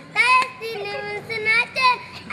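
A group of children singing together, their voices moving through short held notes.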